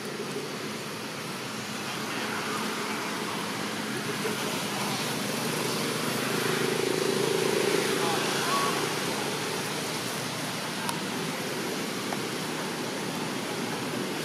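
Steady outdoor background noise with indistinct distant voices, swelling slightly in the middle.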